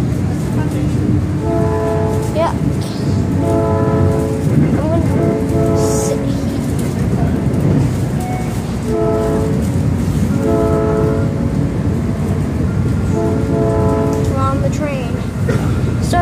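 South Shore Line train running with a steady rumble, while a horn sounds in a series of roughly one-second blasts with short pauses between them.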